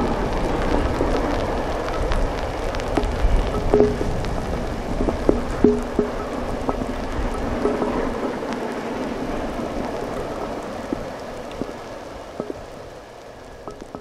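Steady rain with raindrops pattering close by. Under it, the low rumble of a distant steam locomotive, the Royal Scot class three-cylinder 4-6-0 46100, fades steadily as the train draws away.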